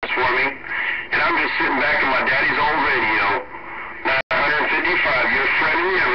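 A distant station's voice coming in over a two-way radio's speaker, too garbled by the band noise to make out words. The signal dips twice and cuts out abruptly for an instant about four seconds in, then the voice resumes.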